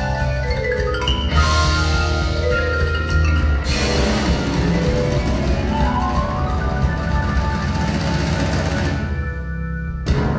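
Live instrumental progressive rock band playing an intricate passage: marimba, electric guitars, keyboards and drum kit together, with mallet notes prominent over a heavy bass line. Near the end the cymbals drop out.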